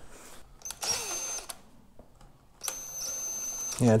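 Power drill running in two short bursts with a steady high whine, widening drilled holes in a snowmobile's dash panel.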